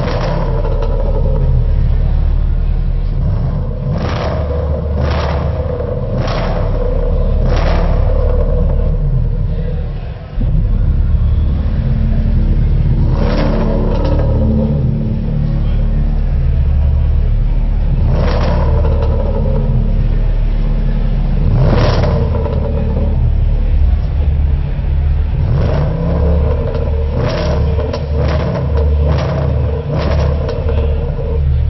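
Range Rover Sport SVR prototype's supercharged V8 rumbling with a deep, steady exhaust note, with sharp pops at irregular intervals. Crowd chatter is heard beneath it.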